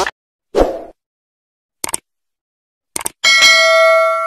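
Subscribe-button animation sound effect: a short pop, a few small clicks, then a bell ding that rings for about a second from about three seconds in.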